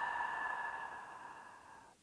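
A long, audible out-breath through the mouth, a breathy sigh that fades steadily away and dies out just before the end.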